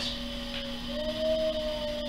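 Electric pottery wheel's motor running with a steady hum and a higher whine that rises slightly in pitch about half a second in, then holds.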